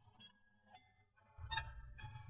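Faint scattered tones, then street traffic rumble sets in about a second and a half in, with a loud vehicle horn honk.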